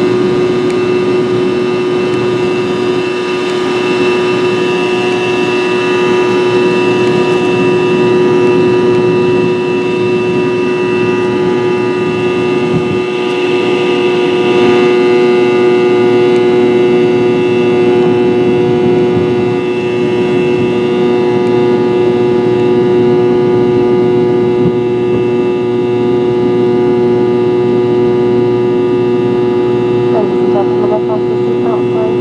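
Cabin noise of a Fokker 70 airliner in flight: the steady drone of its rear-mounted Rolls-Royce Tay turbofans, with a strong constant mid-pitched hum and a fainter high whine over the rush of airflow. The whine swells briefly about halfway through.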